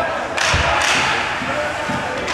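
Youth ice hockey play: about half a second in, a thud and a short burst of hissing scrape on the ice as a player goes down, followed by a second scrape. Spectators' voices go on underneath.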